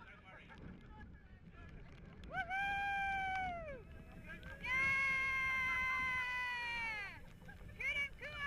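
Two long, high, held vocal calls, the second higher and louder, each steady in pitch and dropping away at its end; shorter calls begin near the end.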